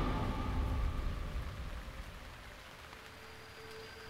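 A steady, rain-like hiss that fades away gradually, with the last of a music tone dying out in the first second.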